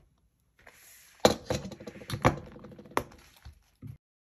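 Rustling and handling of a metal binder ring mechanism and a leather planner binder on a desk, with three sharp knocks, the loudest about a second in and the others about two and three seconds in.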